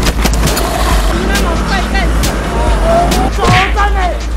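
Steady low road rumble picked up by a vehicle camera, with a few sharp knocks, and a person shouting in a raised voice in the second half, loudest near the end.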